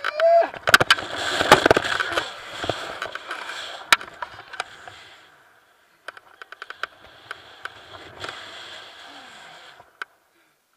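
Wind rushing over a body-worn action camera's microphone during a rope jump's free fall and swing. It is loudest over the first five seconds, drops out briefly, then returns more quietly, with sharp clicks and knocks scattered through.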